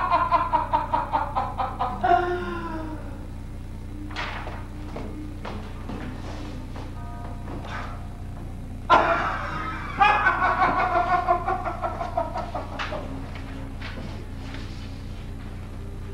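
A man's voice in a loud, rapidly shaking, pulsed cry that fades over the first two seconds, then a second sudden loud cry of the same kind about nine seconds in, fading over some three seconds. Faint held musical tones sound in the quieter stretches, over a steady low hum.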